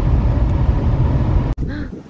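Car cabin noise while driving: a steady low rumble of road and engine noise, which cuts off suddenly about one and a half seconds in.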